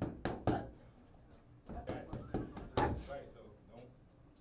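Boxing gloves striking during close-range sparring: a quick flurry of thuds at the start and another about two to three seconds in, with voices mixed in.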